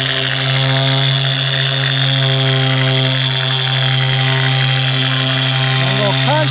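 Griot's Garage three-inch polisher running steadily at speed setting five, its orange pad buffing polish over car paint: a steady electric-motor hum with a high whine above it.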